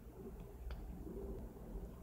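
Faint, low-pitched bird calls in the background, with a small click about two-thirds of a second in.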